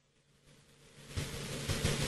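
Near silence for about a second, then a faint, even hiss of outdoor pitch ambience from the match camera's microphone rises, with a few soft low thuds.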